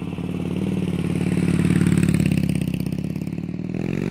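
Harley-Davidson 96 cubic inch air-cooled Twin Cam V-twin running through a Vance & Hines 2-into-1 exhaust. It swells louder toward the middle with a blip of throttle, then eases back.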